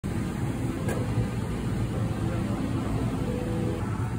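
Steady low roar of a glassblowing hot shop's burners and ventilation running, with a single sharp click about a second in.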